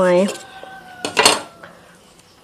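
A kitchen knife cutting through a fresh lime: one short, sharp cut about a second in.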